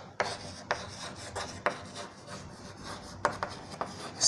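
Chalk writing on a blackboard: short scratching strokes with sharp, irregular taps as the chalk meets the board.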